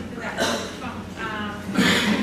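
Indistinct speech from people in a large room, with a steady low hum underneath.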